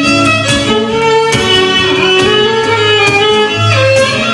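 Live violin playing a held, gliding melody over two acoustic guitars strumming a steady accompaniment: an instrumental passage between sung verses.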